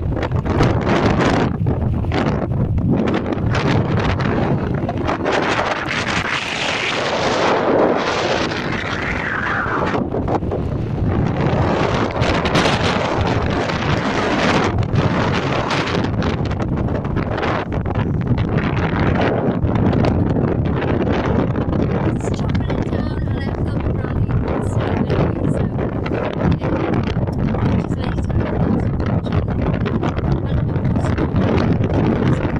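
Strong, gusty wind blowing across a phone's microphone: a loud, continuous buffeting rumble that swells and eases from moment to moment.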